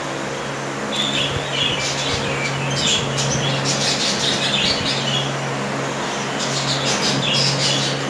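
Budgerigars chirping and chattering in short bursts of high twittering, busiest in the middle and again near the end, over a steady low hum.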